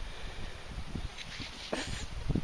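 Wind rumbling on the microphone, with faint rustles from handling.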